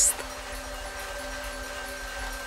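Lottery ball-drawing machine running with a steady hum as it mixes the balls, with a faint steady high tone over it.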